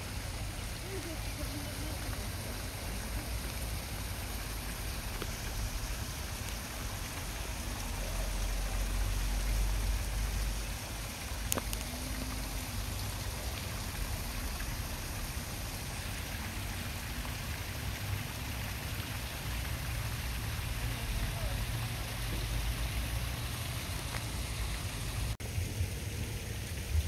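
Water from the Ross Fountain's spouts splashing steadily into its stone basin, with a low rumble that swells about eight to ten seconds in.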